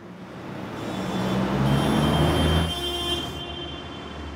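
A heavy road vehicle passing on a city street: its rushing noise builds, peaks about two seconds in and falls away. Under the noise is a low engine hum that steps down in pitch, with a faint high whine.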